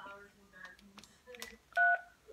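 Cordless phone handset beeping as a number is dialed: a few faint short sounds, then one louder steady keypad beep lasting a fraction of a second near the end.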